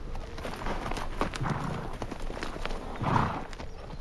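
Horses' hooves clip-clopping at an uneven pace on earth and grass, with a louder burst of noise about three seconds in.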